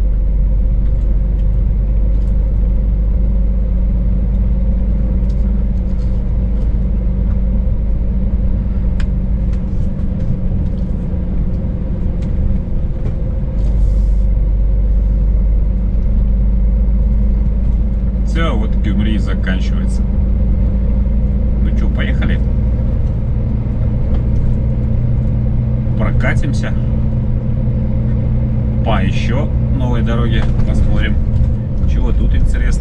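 Scania S500 truck's V8 diesel engine running under way at road speed, a loud steady low drone whose tone shifts a few times as the load and speed change.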